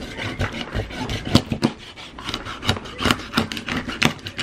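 Meat cleaver cutting a whole white bass into steaks on a plastic cutting board: a run of short rasping strokes as the blade saws through scaled skin and bone, mixed with sharp knocks of the blade on the board.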